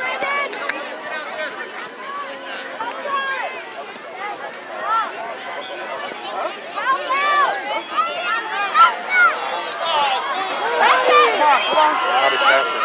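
Overlapping distant shouts and calls from youth soccer players and sideline spectators, unintelligible, growing louder in the second half.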